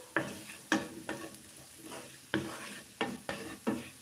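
Wooden spatula scraping and knocking against a nonstick frying pan as diced potatoes are stirred, about nine strokes at uneven intervals, over a faint sizzle of frying.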